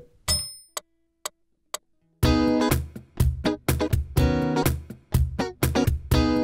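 Electric guitar: after a few short clicks, it starts about two seconds in, playing a rhythmic riff of clean picked notes with short gaps between phrases.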